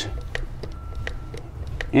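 Hand lever grease gun being pumped into a trailer hub's spindle grease fitting: a run of light clicks from the lever strokes.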